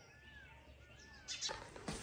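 Birds calling faintly in the background: a few short calls that rise and fall in pitch. A few soft clicks follow near the end.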